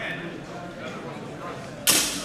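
One sharp, loud crack of a steel training longsword strike near the end, trailing a short ring, over quiet voices and hall murmur.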